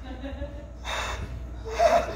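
A person on stage gasping and crying out in two short, breathy vocal bursts about a second in, the second louder, near the end.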